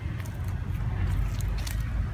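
Footsteps in flip-flops on dry, cracked soil: a few faint crunches and slaps over a steady low rumble on the microphone.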